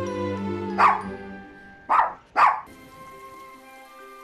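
A dog barking three times, loud sharp barks about a second apart and then half a second apart, over film-score music.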